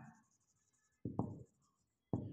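Marker pen writing on a whiteboard: a few short strokes about a second in.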